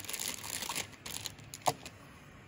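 Rustling, crinkling handling noise of drawing supplies as a paper tortillon (blending stump) is picked up, louder in the first second and then fading, with one short sharp click near the end.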